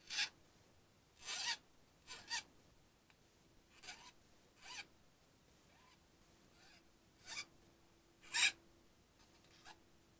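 Hand file rasping in short, irregular strokes across the cut edges and corners of a thin sheet-metal soft jaw, deburring the sharp edges smooth. There are about nine strokes, the loudest one near the end.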